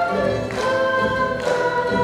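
Andean folk ensemble playing: several quenas hold a melody in harmony over guitar, changing notes twice.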